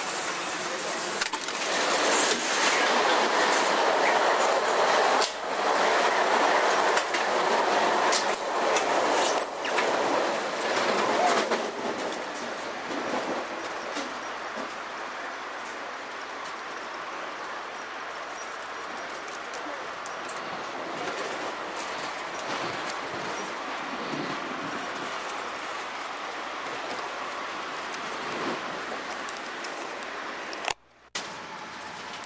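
Riding noise inside a Metra commuter rail car in motion: a steady rush and rumble of the wheels on the rails. It is louder for about the first twelve seconds, then settles to a quieter, even level.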